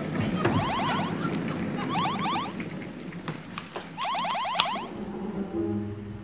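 Electronic science-fiction sound effects from a 1960s TV soundtrack: three short bursts of rapid chirping trills, about half a second each, over a dense electronic background. A steady low hum comes in near the end.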